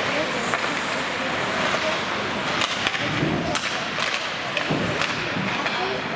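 Ice hockey play: skate blades scraping the ice, with several sharp clacks of sticks and puck, and short shouts from players or spectators.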